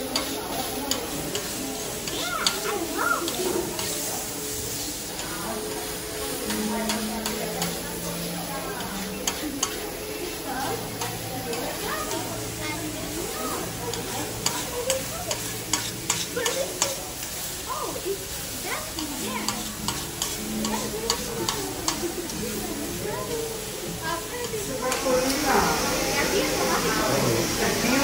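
Food sizzling and frying on a steel teppanyaki griddle, with a metal spatula clicking and scraping against the hot plate many times. Near the end the sizzling grows louder.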